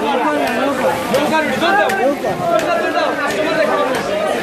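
Several people talking over one another at once, a steady babble of voices, with a few short sharp knocks.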